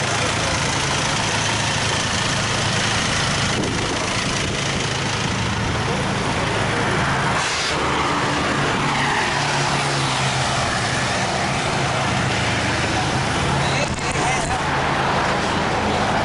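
Vehicle engines running with steady road and traffic noise, a low engine hum throughout.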